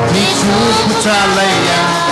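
Telugu Christian worship music: band accompaniment with held and gliding notes, and a singer's voice sliding through a sung phrase in the first half.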